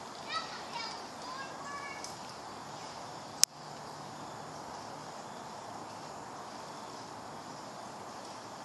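Outdoor woodland ambience: a steady background hiss, with short high-pitched chirping calls, distant voices or birds, over the first two seconds. A single sharp click about three and a half seconds in is the loudest sound.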